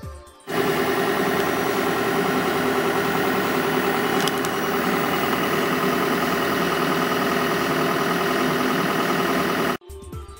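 Laboratory machinery running with a loud, steady drone. It starts abruptly about half a second in and stops just before the end.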